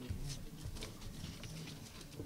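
Faint scattered taps and rustles over a low room hum: handling noise from a handheld microphone and papers at a lectern.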